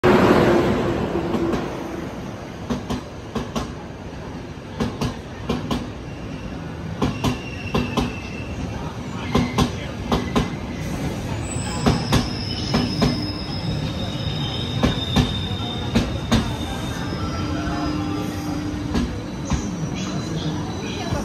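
CP class 5600 electric locomotive rolling close past at the start, loudest in the first two seconds, then its coaches passing with a rumble and regular clacks of wheels over rail joints, often in pairs. Several high wheel and brake squeals come and go as the train slows into the station.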